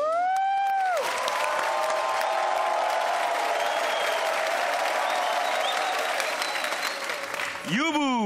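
A voice holds one long high note for about the first second, then a studio audience applauds and cheers. Near the end a falling swoop of tones is heard.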